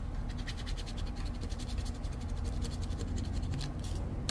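A coin scratching the coating off a scratch-off lottery ticket in quick, evenly repeated strokes.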